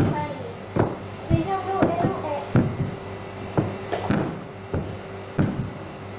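Wooden rolling pin knocking and rolling on a stone counter as dough is rolled out: about ten irregular thumps, roughly one every half second to a second, over a steady low hum.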